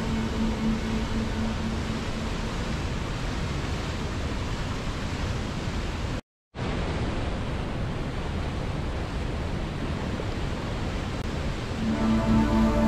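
Steady rush of a fast river running over rapids, with the last faint notes of soft music fading out in the first second or two. About six seconds in, the sound cuts to dead silence for a moment, then the water resumes a little duller.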